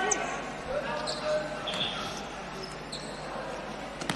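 Quiet on-court sounds of a futsal match: sneakers squeaking and the ball being played on the indoor court, with distant voices in the hall.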